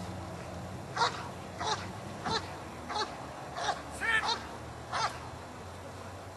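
A series of about eight short, harsh animal calls, one every half second or so, starting about a second in and stopping about a second before the end.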